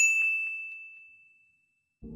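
A single bell-ding sound effect, the notification-bell chime of a subscribe reminder: struck once, with one clear high ringing tone that fades away over about a second and a half.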